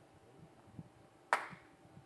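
A single sharp click about a second and a half in, against quiet room tone.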